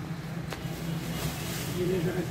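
A steady low hum under background noise, with a faint voice briefly near the end.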